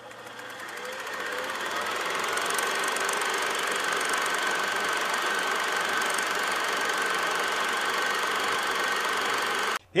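Machine-like buzzing and whirring sound effect that builds up over the first two seconds, holds steady with a high whine over it, and cuts off abruptly just before the end.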